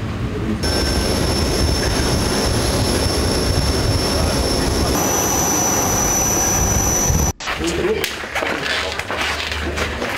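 Aircraft turbine engine running on the ground: a loud steady rumble with a high, even whine. The whine steps up in pitch about five seconds in. The sound cuts off abruptly at about seven seconds and gives way to voices murmuring in a room.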